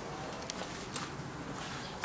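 Faint handling noise from a handheld camera being carried into a car's interior: low steady background with two small clicks about half a second apart.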